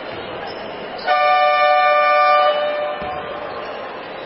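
Arena horn sounding a single steady blast of about a second and a half over crowd chatter, signalling the end of a timeout.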